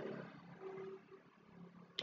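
Near silence: faint room tone, with a brief faint hum about half a second in.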